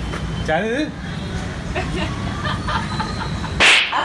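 A brief, sharp whoosh near the end, the loudest sound here, over a low steady background noise, with a short spoken word near the start.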